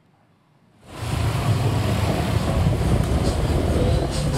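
Small motorbike engines running, a steady rough noise that comes in suddenly about a second in after near silence.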